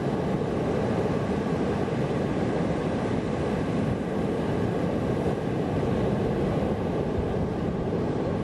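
Surf breaking on a sandy beach, heard as a steady rushing noise, with wind buffeting the microphone.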